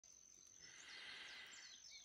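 Near silence: faint outdoor ambience, with a high thin insect tone and a few faint bird chirps.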